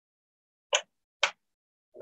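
Two short knocks about half a second apart: a wooden spatula tapping against a frying pan.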